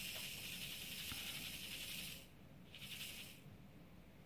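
Small resin diamond-painting drills poured and shaken in a plastic tray: a hissing rattle for about two seconds, then a shorter one after a brief pause.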